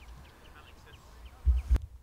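Quiet open-air field background with faint, short, high bird chirps, then a brief loud low rumble about one and a half seconds in that cuts off abruptly.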